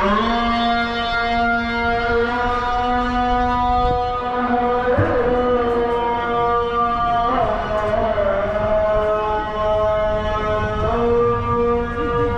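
Islamic call to prayer (adhan): a man's voice chanting long, steady held notes, with wavering turns in pitch about five seconds in, again a couple of seconds later, and near the end.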